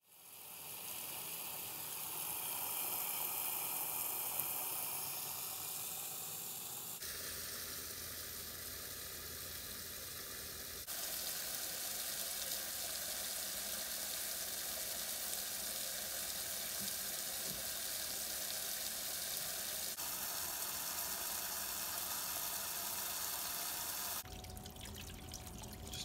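A jet of water from a pump-fed tube and one-way valve spraying into a large ceramic pot and splashing on the water inside: a steady hiss of rushing water that changes abruptly several times.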